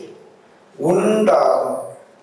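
A man's voice speaking one drawn-out phrase, starting about a second in, with quiet room tone before it.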